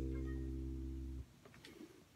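Electric bass guitar: a single low note ringing out and fading, then abruptly muted a little over a second in, followed by a few faint clicks.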